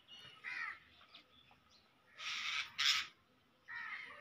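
Crow cawing: a short call near the start, two louder caws a little past halfway, and fainter calls near the end.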